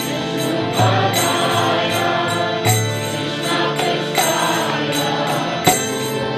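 Harmonium playing sustained chords under sung devotional chanting, with a sharp percussive strike every one and a half to two seconds.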